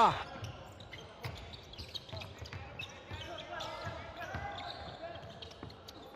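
Faint court sound in an arena during a basketball game: a ball bouncing on the hardwood with scattered knocks, and distant voices in the hall.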